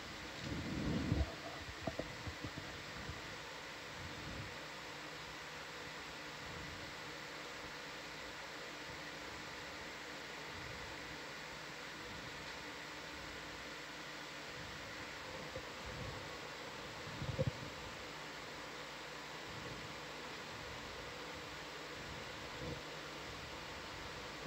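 Steady hiss and hum of equipment and ventilation in an ROV control room, with a few brief, muffled bumps about a second in and again around seventeen seconds.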